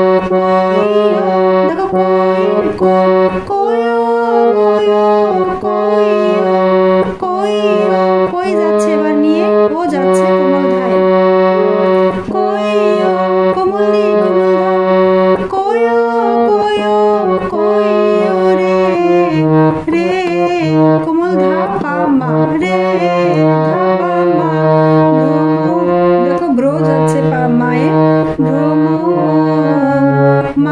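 Harmonium playing a melody in sustained reedy notes that step up and down in pitch, one note after another.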